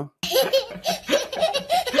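A toddler laughing hard: a run of quick, high-pitched bursts of belly laughter, starting just after a brief gap.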